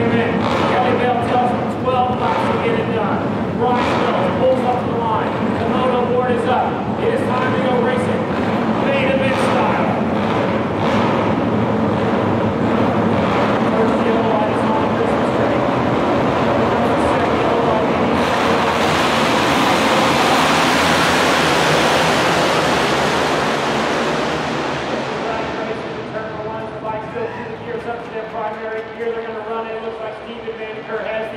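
Indistinct voices over racetrack crowd noise, with flat-track racing motorcycles running. About eighteen seconds in, a louder rush of noise swells for several seconds, then fades.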